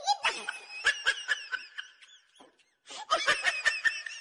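A person laughing in quick repeated bursts. The laughter stops briefly a little past halfway, then starts up again.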